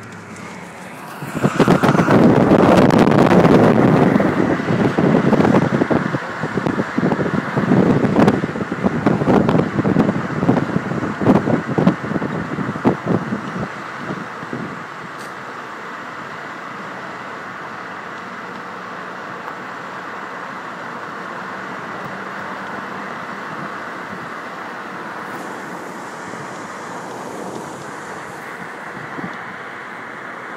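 Car travelling along a highway. For about the first 13 seconds, loud gusting wind buffets the microphone with knocks mixed in; after that the car's road noise runs on steadily and more quietly.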